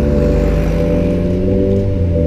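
Background music with sustained notes, mixed with a car pulling away and accelerating: a 2006 Suzuki Swift Sport's four-cylinder engine through an aftermarket Fujitsubo exhaust.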